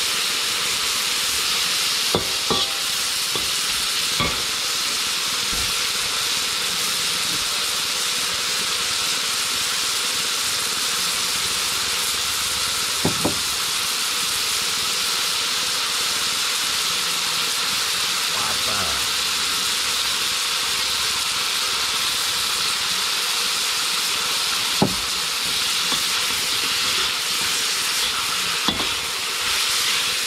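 Pieces of meat frying in a large wok, sizzling steadily, stirred with a metal spatula, with a few sharp knocks of the spatula against the wok.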